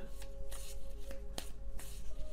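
Tarot cards being shuffled by hand, with a few crisp snaps and rustles, over soft background music with held tones.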